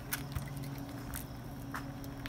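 A few faint clicks as the latched hatch door of a travel trailer's water-connection compartment is unlatched and swung open, over a steady low hum.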